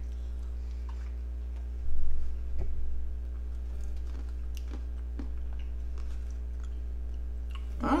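Soft chewing and mouth sounds of people eating ice cream from plastic spoons, with scattered small clicks. There is a low thump about two seconds in, over a steady low hum.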